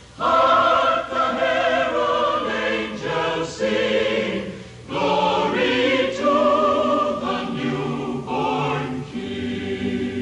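A mixed choir of carolers, men's and women's voices together, singing a Christmas carol, with a short pause between phrases about halfway through.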